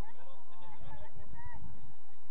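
A run of short honking animal calls, several in quick succession, over a low rumble.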